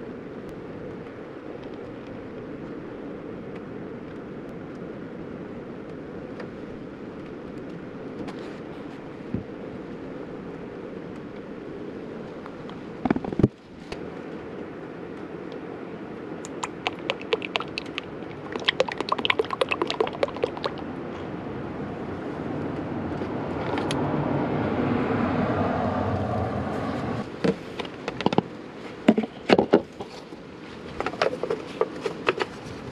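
Motor oil pouring steadily from a plastic jug through a plastic funnel into an engine's oil filler. The flow breaks briefly about halfway, then comes rapid clicking and a louder stretch of pouring as the jug empties. It ends in a few sharp knocks as the jug is set aside and the filler cap is handled.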